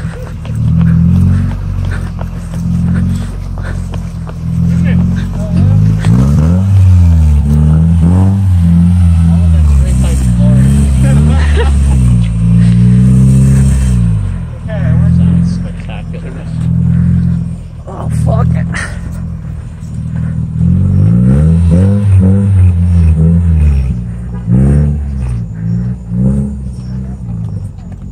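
Engine of a half-cut car (the front half of a small hatchback, driven without its rear body) running loud and close, its pitch rising and falling as it is revved and driven around.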